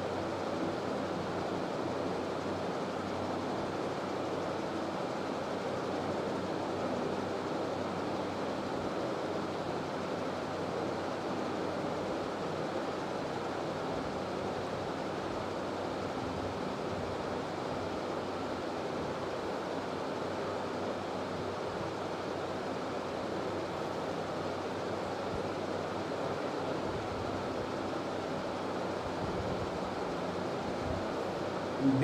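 Steady, even rushing background noise that does not change throughout, with no speech.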